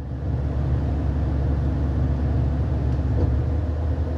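Low, steady rumble of a car heard from inside its cabin, swelling a little just after the start and then holding even.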